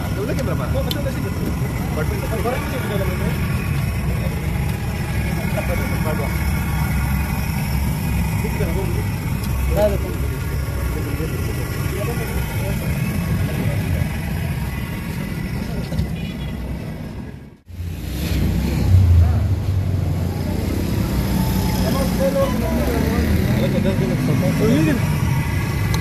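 Busy street ambience: a steady low rumble of traffic with people talking in the background. The sound drops out briefly about two-thirds of the way through.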